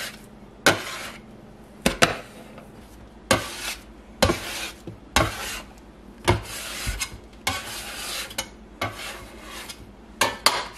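A bench scraper tapping down onto a countertop and scraping across it as rounds of wet bread dough are shaped. It goes as a sharp tap followed by a short scrape, about once a second.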